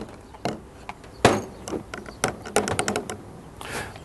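Irregular plastic clicks and knocks as a hand blender is pulled out of a plastic filter jug, its blending shaft unclipped from the motor body and the parts set down on a table. One louder knock comes a little over a second in, and a quick run of clicks near three seconds.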